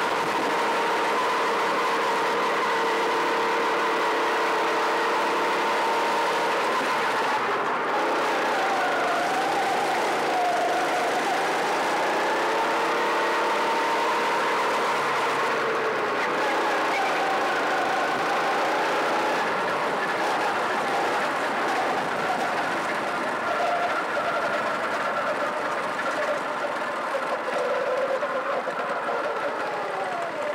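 Honda Pro-kart's single-cylinder four-stroke engine heard on board, running steadily with its pitch dipping and rising through the corners. From about two-thirds of the way in, it grows uneven and fades as the kart slows after the chequered flag and comes to a stop.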